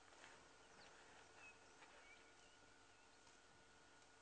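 Near silence: faint outdoor bush ambience with a few short, faint bird chirps.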